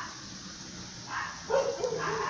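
A dog giving a short bark about a second in, then a wavering whine.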